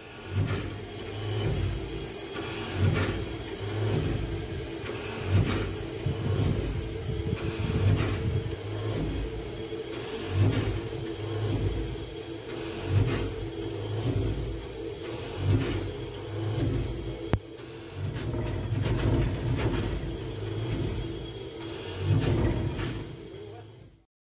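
Cab sounds of the 1920 Haine-Saint-Pierre steam locomotive: a steady rumble with a loud low pulse about every two and a half seconds, and a sharp click about two-thirds of the way through.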